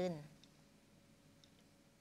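A woman's voice finishes a word at the very start, then a pause of near silence: faint room tone with a faint steady hum and a couple of tiny clicks.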